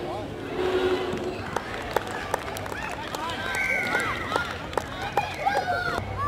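Several voices calling and shouting over one another, some of them high-pitched, with scattered sharp clicks.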